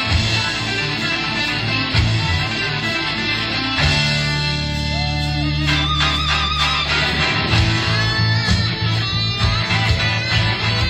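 Live hard rock band playing, with electric guitar over bass and drums. About four seconds in, the band holds one long low chord with a wavering high note on top. The driving rhythm comes back about two seconds before the end.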